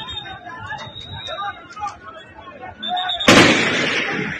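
A single loud gunshot about three seconds in: a sharp crack followed by a long echoing tail, over people's voices.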